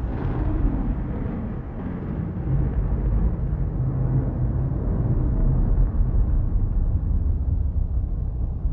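A low, steady rumbling drone, deep and noisy with no clear beat or melody, running under the end credits.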